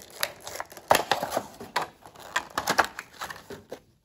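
A clear plastic blister pack being pulled open by hand, crinkling and crackling in irregular sharp snaps, loudest about a second in.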